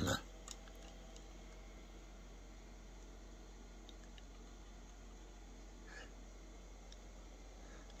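Quiet room tone with a steady low hum and a couple of faint handling clicks as a hand-held spring force gauge is worked against the magnet.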